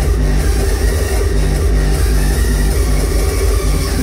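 Loud hardstyle/rawstyle electronic dance music played live over an arena sound system, with a constant heavy distorted bass and a steady pulsing rhythm.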